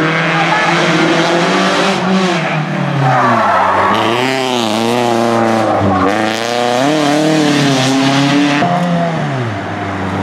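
Rally car engines at racing speed, the pitch repeatedly rising and falling with throttle and gear changes through corners.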